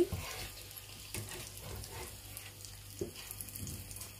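Soft, steady sizzle of coated cheese pieces frying in oil in a pan, with a few faint knocks.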